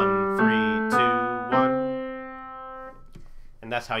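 Piano, left hand finishing the ascending C major scale: four notes stepping up, the last, middle C, held about a second and a half, then released.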